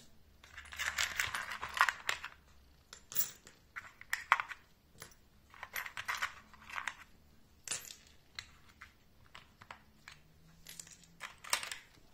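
Small steel mandrels and shafts from a rotary multi-grinder accessory kit clinking and rattling against each other and on a hard floor as they are handled and set down, in several bursts of sharp metallic clinks, the longest starting about half a second in.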